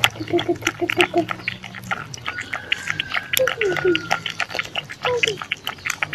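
A puppy lapping milk from a shallow plastic lid: a quick run of wet tongue clicks, several a second, with short squeaky noises from the puppy in between.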